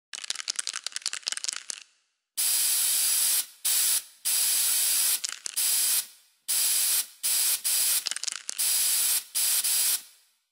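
An aerosol spray-paint can rattled for about two seconds, then sprayed in a series of about eight to ten sharp hissing bursts of varying length, each cut off abruptly.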